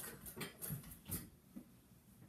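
A few faint, short vocal sounds from a woman in the first second, then quiet room tone.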